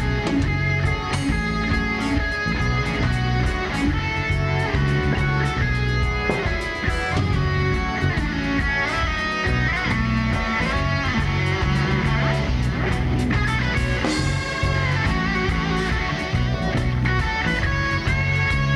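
Live rock band playing an instrumental passage: a Les Paul-style electric guitar plays a lead with bending notes over bass and drums.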